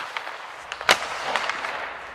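A single sharp crack just under a second in, with a few lighter clicks before and after it over a faint hiss.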